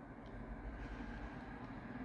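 Faint, steady low hum from the animatronic's blue hobby micro servos and their driver board. The servo noise is what the builder says he can't do much about.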